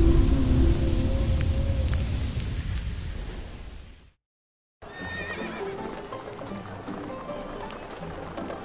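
Theme music fades out over the first four seconds, followed by a brief silence. After that a horse whinnies, and hooves clip-clop as a horse-drawn cart moves along.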